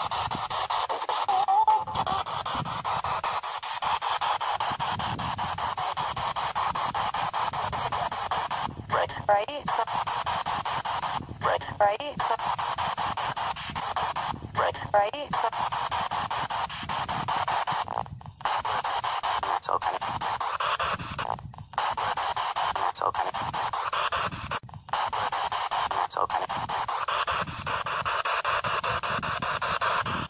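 Spirit box scanning rapidly through radio stations: a continuous hiss of static broken by many brief dropouts as it jumps between frequencies, with short snatches of radio voices coming through a few times.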